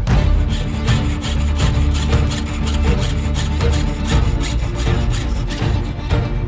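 Jeweler's saw cutting brass sheet held on a wooden bench pin, with repeated back-and-forth rasping strokes under background music.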